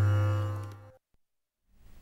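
The fading tail of a TV news show's title jingle: a held low musical note dies away and stops about a second in, leaving silence.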